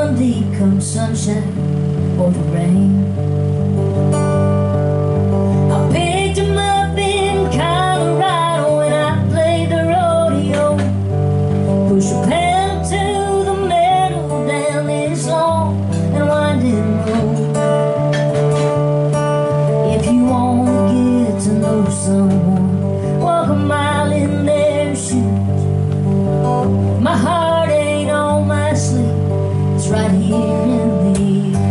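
A woman singing a country love song live, accompanying herself on strummed acoustic guitar, the chords changing every couple of seconds.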